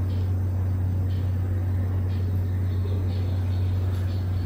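A steady, unchanging low hum.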